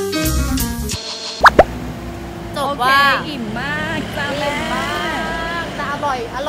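Upbeat background music that cuts off about a second in, followed by two quick rising 'plop' sound effects, the loudest sounds here. After that comes the steady hum of street traffic under a woman's voice.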